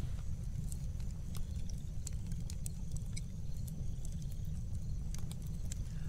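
Wood fire burning in a fire pit, crackling with irregular sharp pops over a steady low rumble.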